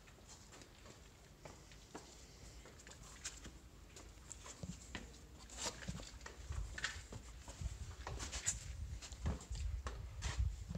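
Footsteps on cave rock: scattered light taps and scuffs with low thumps, getting louder and busier in the second half.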